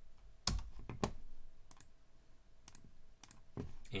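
Scattered clicks from a computer keyboard and mouse. There are two firmer clicks about half a second and a second in, then lighter clicks, some in quick pairs, spread through the rest.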